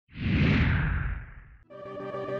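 A whoosh sound effect that swells quickly and fades away over about a second and a half. Music with sustained organ-like chords comes in near the end.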